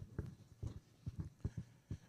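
Footsteps on a stage floor: about eight soft, irregular knocks as a presenter walks across the stage, picked up by the handheld microphone he carries.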